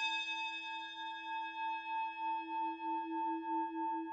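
A single bell-like chime for an animated logo, struck just before and ringing on with a wavering pulse of about five beats a second.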